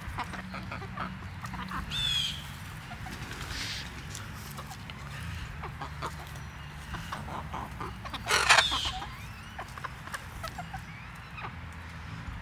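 Chickens clucking as they peck and scratch around freshly dug soil and vines, with small scattered clicks and rustles. A short high call comes about two seconds in, and a brief loud burst about eight seconds in.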